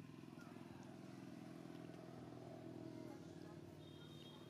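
Faint, steady low hum of an engine running, with an even pulsing rumble that holds through the whole stretch.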